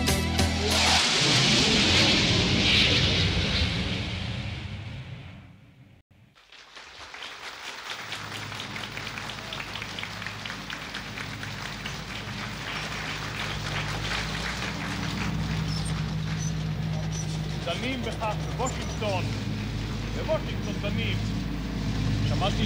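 The end of a song on a 1980s album recording fading out to near silence about six seconds in. The next track then opens on a steady noisy background with a low hum, and voices come in near the end.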